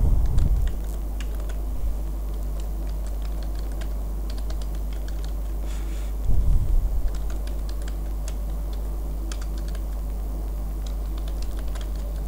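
Typing on a computer keyboard: irregular clusters of key clicks over a steady low hum. Two short low thumps, one at the start and one about six seconds in, are the loudest moments.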